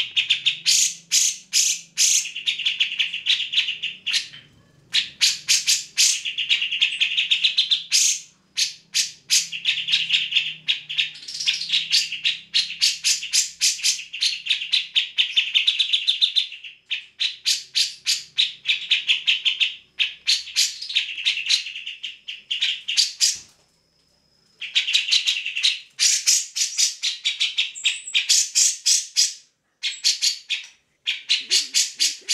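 Cucak jenggot (grey-cheeked bulbul) singing in long, loud phrases of rapid, sharp chattering notes, with short breaks between phrases and a pause of about a second late on.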